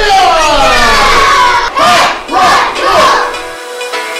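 A group of young children yelling a taekwondo kihap together: one long shout that falls in pitch, then three shorter shouts in quick succession.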